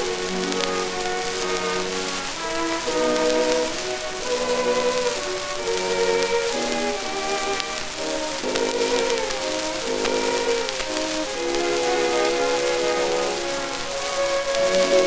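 Orchestral passage from a 1922 acoustic recording on an Edison Diamond Disc, a melody played in held, stepping notes, under a steady hiss and fine crackle of surface noise from the old disc.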